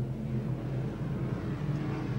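Modified rod speedway cars' engines running as the field laps a dirt track: a steady low drone that drifts slightly up and down in pitch.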